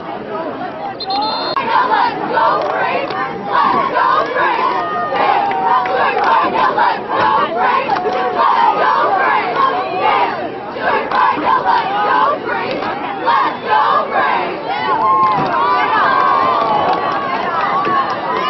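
Football crowd and sideline players shouting and cheering, many voices overlapping loudly.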